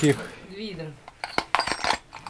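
Drill bits clinking together as they are handled on a workbench: a few quick metallic clinks in the second half, after a brief muttered word.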